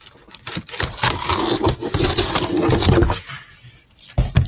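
Cardboard shipping-box packaging being handled, a dense scraping, crackling rustle that starts about half a second in and dies away after about three seconds.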